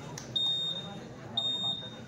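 A high electronic beep, each about half a second long, repeating once a second, twice here, over the murmur of crowd voices.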